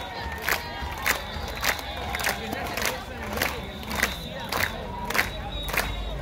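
Murga percussion: bass drums with cymbals (bombo con platillo) striking a steady beat, a little under two strikes a second, over a shouting crowd.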